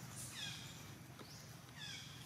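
Baby macaque giving high-pitched, falling, mewing cries, one near the start and another just before the end.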